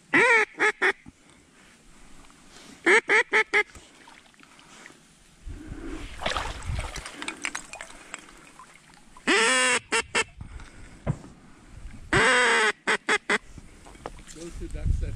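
A mallard-style duck call blown hard at close range: four loud runs of quacks, most starting with one drawn-out quack and ending in a few short quick ones, used to coax passing ducks in to the decoys.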